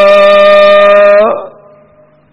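A man's voice holding one long chanted note, which glides up slightly and fades out about a second and a half in, leaving only faint background.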